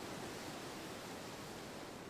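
Faint, steady outdoor ambient noise: an even hiss with no distinct events.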